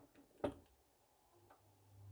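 A single sharp click about half a second in, with a few fainter ticks after it: kitchen utensils being handled at a frying pan on the hob.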